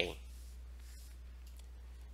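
The end of a spoken word, then a quiet pause holding a low steady hum and a couple of faint clicks.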